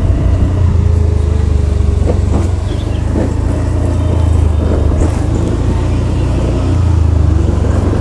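A motorbike running at low speed along a street, with a steady low rumble of wind buffeting the microphone.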